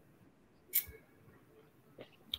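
Near silence broken by one short, sharp click about three-quarters of a second in.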